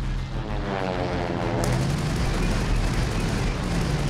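World War II propeller fighter plane flying past in a film dogfight, its engine note falling in pitch, then a sudden burst of rapid machine-gun fire from about a second and a half in that runs on to the end.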